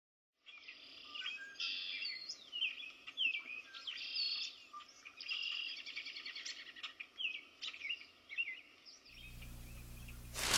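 Several songbirds chirping and singing in quick, varied calls and trills over a low, steady background rumble. The birdsong stops about a second before the end, giving way to a low hum.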